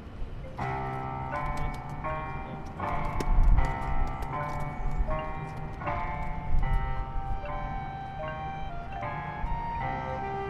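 A high school marching band starting its show about half a second in: a series of sustained chords that change every half second or so, with heavy low drum hits around three and a half seconds in and again about three seconds later.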